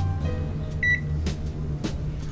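Microwave oven keypad: one short high beep about a second in as a button is pressed, then a couple of faint clicks, over steady low background music.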